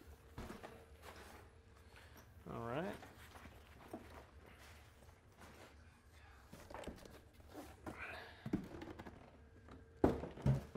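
Faint handling noises: soft knocks and rustles of a cardboard shipping box and the gear inside it being moved and lifted out. A short murmur of voice comes about three seconds in.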